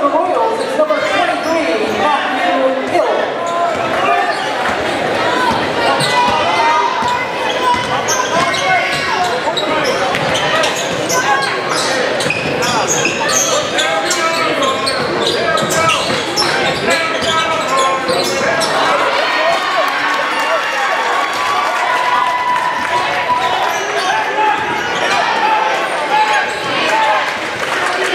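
Basketball game in a large gym: a ball dribbling on the hardwood court over steady crowd chatter and voices from the stands, echoing in the hall.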